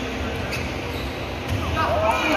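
Basketball being dribbled on an indoor gym court, the bounces echoing in a large hall over a steady background of voices. A voice calls out near the end.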